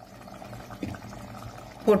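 Pieces of dried fish dropped by hand into a pot of boiling curry, which bubbles steadily, with one small splash a little under a second in.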